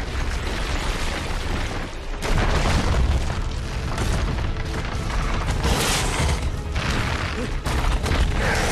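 Film battle soundtrack: orchestral score over deep booms and crashing debris, with a brief lull about two seconds in before it swells louder again.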